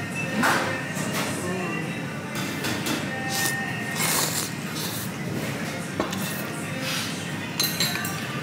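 Ramen noodles slurped from a bowl in several short noisy pulls, the strongest about halfway through. Under them run restaurant chatter, clinks of dishes and faint background music.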